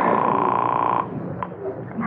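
Telephone ringing tone heard through the receiver: one long ring at a steady pitch that stops about a second in, followed by a click as the call is picked up at the other end.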